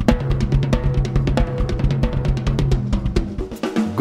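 Drum kit played fast in a live band performance: rapid bass-drum strokes and dense snare and cymbal hits over steady pitched notes from the band. The low end drops away near the end.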